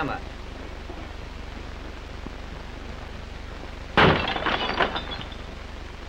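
A hammer smashing a glass pane about four seconds in: one sharp crash followed by about a second of glass shards clattering and tinkling. Before the crash there is only the steady hum and hiss of an old film soundtrack.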